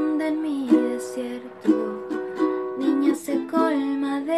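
Ukulele strummed in steady chords, with a woman's voice singing along in held notes that slide between pitches.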